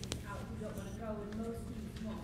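Faint speech from a person talking away from the microphone.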